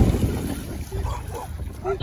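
Wind buffeting the microphone as a low, uneven rumble, with faint voices in the background.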